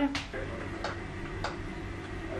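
Three faint ticks, spaced a little over half a second apart, over a low steady hum.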